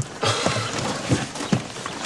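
Even, clip-clopping steps, about two and a half a second, over a steady background hiss.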